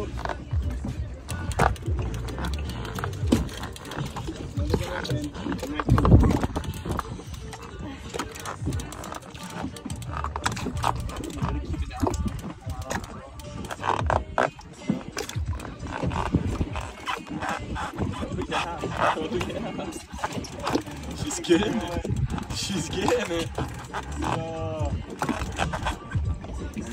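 Indistinct voices and grunting over background music, with a loud low thump about six seconds in.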